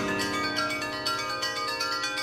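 Percussion and orchestra music: a struck chord rings on in many steady, bell-like tones that slowly fade, with light, fast tapping over it. The tones come from acoustic guitars laid flat and played with wooden sticks.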